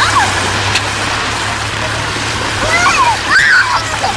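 Small waves washing onto a sandy beach, a steady rush of surf, with high-pitched children's voices calling out briefly at the start and again for about a second near the end.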